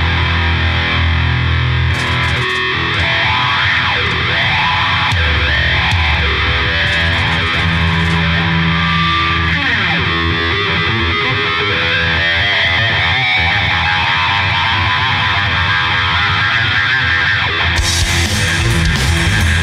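A live rock band playing an instrumental intro: distorted electric guitar, bass guitar and drum kit, loud and steady, with a pitch sliding down about halfway through.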